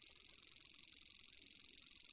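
Grasshopper warbler reeling: a continuous high-pitched, insect-like trill of very fast notes, held steady without a break.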